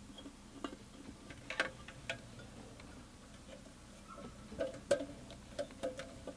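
Handling noise from a slow cooker's metal housing being turned over in the hands: scattered light clicks and knocks, with a cluster of them near the end.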